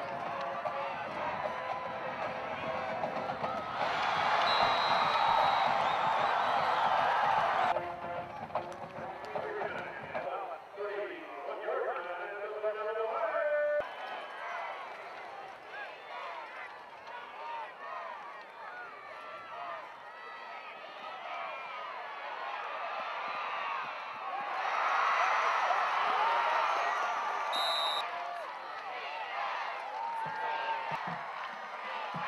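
Football stadium crowd noise, many voices at once, swelling into loud cheering twice: about four seconds in and again near the end. The sound changes abruptly a couple of times, as at cuts between clips.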